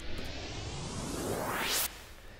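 Riser sound effect in a trap beat: a rushing noise sweeping steadily upward in pitch for nearly two seconds, then cutting off suddenly, as the build-up into the chorus.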